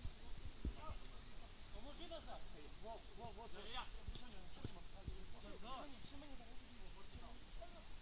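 Faint voices of futsal players calling to each other on the pitch, with a few soft knocks in between.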